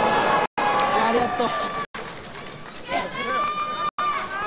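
Mostly speech: Japanese TV wrestling commentary over arena background noise. Near the end a high-pitched voice calls out, and the sound cuts out briefly three times.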